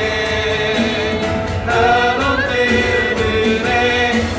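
Live worship music from a church praise band: several voices singing together over piano and acoustic guitar, with a steady beat.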